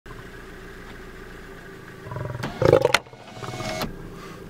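Lion roaring: a loud roar starting about halfway through, followed by a shorter, quieter second call.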